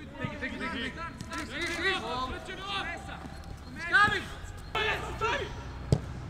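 Footballers shouting and calling to one another on a training pitch, loudest about four seconds in. A single sharp thud of a football being kicked comes near the end.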